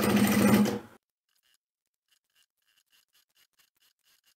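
Pro Sew sewing machine stitching a seam at speed, its motor holding one steady pitch, then stopping suddenly about a second in. After that only faint, quick, even ticks remain.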